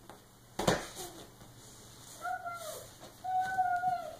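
A baby's hand slaps the leather furniture once, sharply, about half a second in. Then the baby vocalizes twice: a short call that drops in pitch, and a longer steady, held call near the end.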